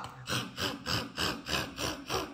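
A rasping growl in short, even strokes, about three a second, made as a skunk growling like a lion.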